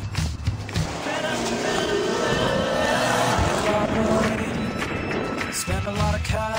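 Background pop music with a car engine over it. The music's beat drops out for most of the stretch, while the engine's pitch dips and then rises.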